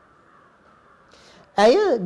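A pause with only faint background hiss, then a man's voice starts again loudly near the end.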